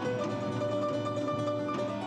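Live crossover ensemble music with a plucked string instrument, guitar-like, carrying steady held notes.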